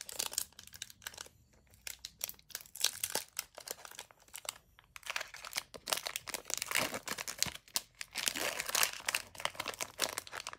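Foil wrapper of a Pokémon Hidden Fates booster pack crinkling and tearing as it is opened by hand. The crackles are sparse at first and come thick and fast in the second half.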